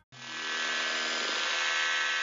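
A sustained electronic buzzing tone with many steady overtones, starting abruptly just after the song cuts off and holding evenly.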